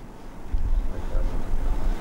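Low rumble on a clip-on lapel microphone starting about half a second in, with faint rustling as sheets of paper are handled and turned on the table.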